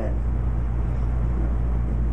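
Steady low hum and rumble of room background noise.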